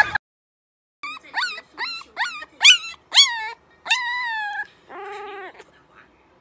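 A puppy crying in a run of about seven high-pitched yelps, each rising and then falling, the later ones drawn out longer, followed by one lower, longer cry near the end.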